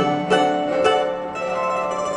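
A domra, plucked with a pick, playing a quick melody of separate notes with sharp attacks, several to the second.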